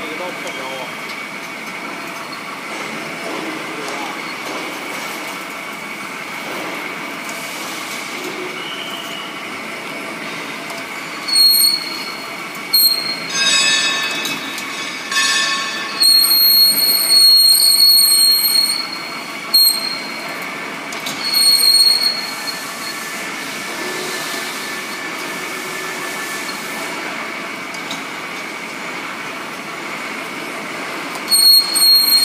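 SKD-600 electric split-frame pipe cutting and beveling machine running on a steel pipe, a steady machine drone with a held whine. About a third of the way in, the cutting tool starts squealing high against the metal in repeated bursts, some brief and some held for a couple of seconds, for about ten seconds.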